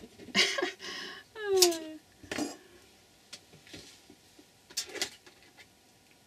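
Metal pliers and eyelet-setting tools clinking and clacking against each other and the table as they are handled and put down, in a few separate knocks and rattles.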